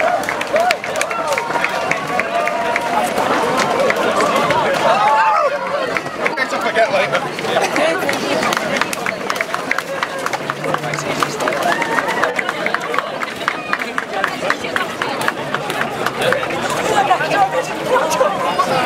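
Footsteps of a large pack of runners on tarmac, a dense run of footfalls going past as the field sets off from a mass start, with voices of runners and spectators talking and shouting throughout.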